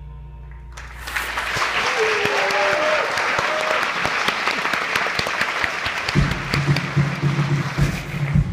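A theatre audience bursting into applause and cheering at the end of a song: a held musical note stops about a second in and loud clapping breaks out, with a few whoops. Near the end, a low, rhythmic music part comes in under the clapping.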